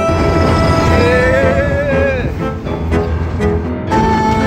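Background music with sustained tones and a wavering, voice-like melody line between about one and two seconds in, over a steady low rumble.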